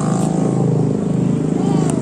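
A motorcycle engine running steadily with a low, pulsing hum.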